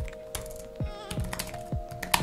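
Typing on a computer keyboard: a quick, uneven run of about eight keystrokes as a name is typed into a text field, over background music with held notes.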